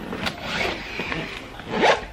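Handling noise as a small pouch is taken off a shelf: uneven rustling with a sharp click just after the start and a brief rising scrape near the end.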